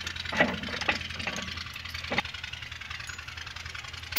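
Massey Ferguson 385 tractor's diesel engine idling steadily as a low hum, with a few sharp metal clicks in the first couple of seconds from the hitch links and pins being handled.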